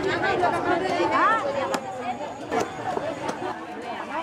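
Several voices talking over one another at close range: lively conversational chatter among market sellers and shoppers, with a few sharp clicks.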